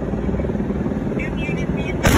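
A steady low rumble of heavy engine noise outdoors, with faint voices. Right at the end a much louder blast begins.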